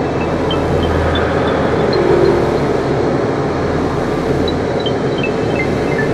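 Experimental electronic music: a dense, noisy wash over a steady low drone. A line of short high bleeps, each echoed, steps up in pitch through the first seconds, then steps back down near the end.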